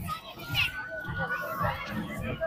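Children playing and calling out, with one high voice held for about a second in the middle.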